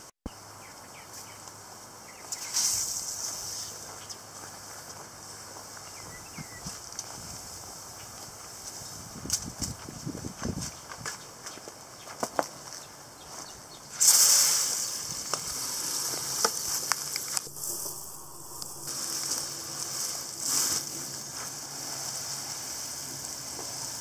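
Tap water spraying from a garden hose wand into a five-gallon plastic bucket packed with pulled weeds. It is a steady hiss that starts about halfway through. Before it there are only scattered rustles and light knocks.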